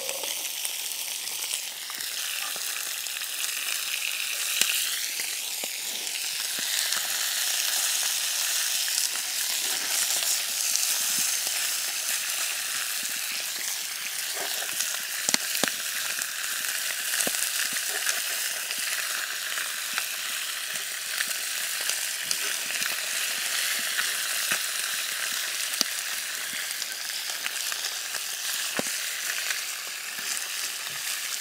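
Bacon-stuffed brook trout frying in cast iron skillets over a campfire, a steady sizzle. A few sharp clicks come through it as metal tongs turn the fish in the pan.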